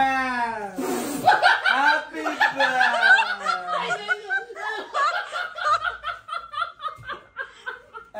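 A group of people laughing together, the laughter breaking into short rapid chuckles in the second half. A brief hiss comes about a second in.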